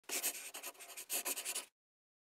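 Quick scratching strokes in two runs, stopping abruptly near the end.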